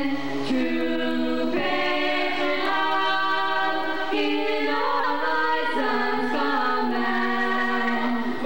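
Three young voices, girls and a boy, singing together in harmony into handheld microphones, holding long notes that change pitch about once a second, with no drums heard.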